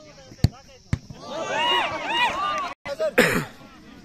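A football struck hard from the penalty spot, with a second sharp thud about half a second later, then several people shouting excitedly. Near the end a brief loud noisy burst follows a short dropout.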